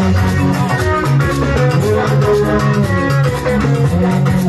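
Live band music: electric guitar picking a melodic line over a steady bass guitar and drum kit.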